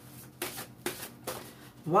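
A tarot deck being shuffled by hand: several short card snaps about half a second apart.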